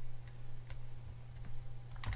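A few faint, sparse clicks from a computer being worked, over a steady low electrical hum.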